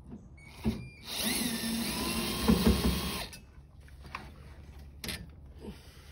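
Cordless drill/driver running for about two seconds, spinning up as it backs out a screw holding the headliner trim in a Chevy C10 cab. A single short click comes before it and another near the end.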